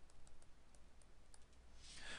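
Faint, scattered ticks of a stylus tapping and writing on a tablet, about six of them. Near the end comes a short breath.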